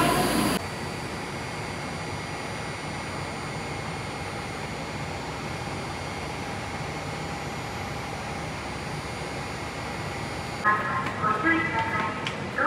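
Steady hum of a Tokyo Metro 02 series subway train standing at the platform with its doors open, with faint steady whines from its equipment. Near the end a louder, pitched sound cuts in suddenly.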